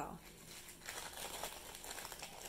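Clear plastic zip-top bag crinkling faintly and irregularly as hands handle it and pull a wax-coated Wikki Stix out of it.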